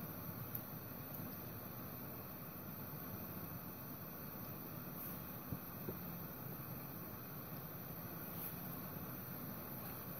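Faint steady hiss with a few small ticks, one about half a second in and two close together near the middle.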